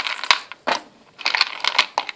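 Small plastic Minecraft mini figures clattering as they are lifted out of a wooden box and dropped onto a pile of other figures. The sound comes in several quick bursts of clicks and knocks.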